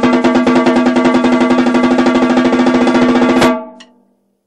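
Snare drum played with sticks in a long, fast single-stroke roll of even strokes, the drum's ringing tone sounding under them. The roll stops abruptly about three and a half seconds in and the ring fades away.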